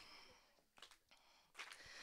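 Near silence, with a faint intake of breath near the end.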